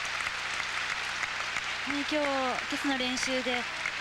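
Arena audience applauding steadily after a figure skating program, with a voice calling out about halfway through.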